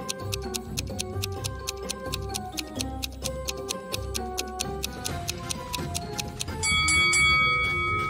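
Quiz countdown-timer sound effect: quick, even clock-like ticking over light background music. A held ringing tone comes in near the end as the timer runs down.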